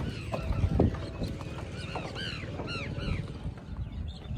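Birds calling over and over in short rising-and-falling calls, busiest in the second half, with footsteps thudding on the wooden planks of a footbridge, most noticeable in the first second.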